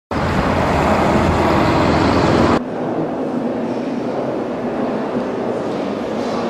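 Road traffic: a steady rumble and hiss of passing cars. It cuts off abruptly about two and a half seconds in, giving way to a quieter, even hiss of indoor room noise.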